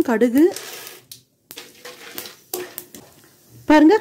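Peanuts and dal faintly sizzling in hot sesame oil in a steel kadai, with a wooden spatula stirring through them.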